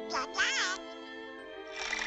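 Donald Duck's raspy quacking cartoon voice: a short squawk, then a warbling cry that rises and falls twice. Underneath are orchestral cartoon music and held string chords.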